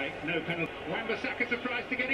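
A man's voice talking steadily at low level, football match commentary from the broadcast of the game.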